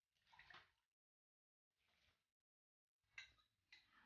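Near silence, with a faint, brief pour of wet, rinsed rice sliding from a glass measuring jug into the pan about half a second in.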